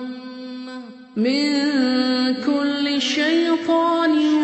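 A single voice reciting the Quran in melodic, chanted style. A long held note fades away with an echoing tail, and just over a second in a new phrase begins, sung with ornamented rises and falls in pitch.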